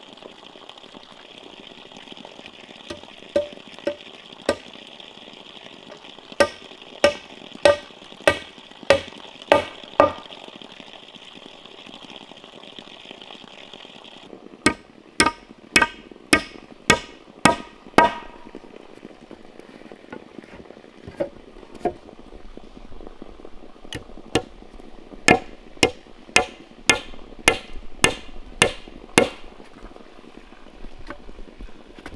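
Hammer driving nails into bamboo slats, in several runs of sharp strikes about two a second with short pauses between runs.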